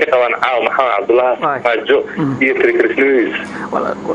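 Speech only: a man talking steadily.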